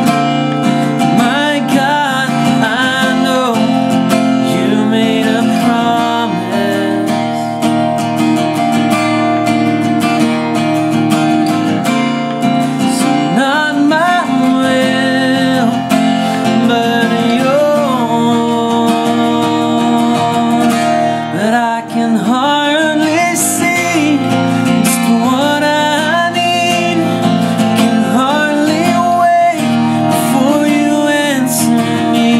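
Acoustic guitar strummed, capo on the first fret, with a man's voice singing over it in bending, wavering notes.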